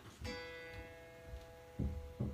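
Electric guitar string plucked once during tuning, a single clear note ringing out and slowly fading. A few low thumps come near the end.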